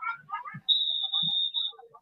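A marching band's whistle blown once, a steady high note held for about a second: the cue for the drummers to start playing. It comes after a moment of voices.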